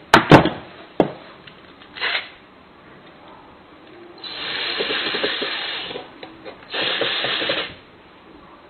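Electric screwdriver driving the lock's stainless steel screws in two runs, about two seconds and then one second long. Before them come a few sharp clicks and knocks.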